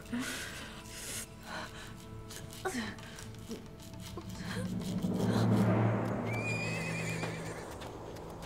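A horse whinnying once near the end, a quavering high call lasting about a second, over a low music drone that swells to its loudest just before it.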